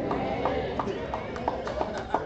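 Scattered hand claps from a congregation, sharp and irregular at a few a second, with a man laughing.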